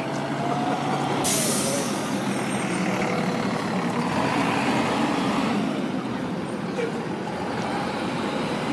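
Articulated city bus driving past and pulling away, its engine running steadily, with a short sharp hiss of air from its air brakes about a second in.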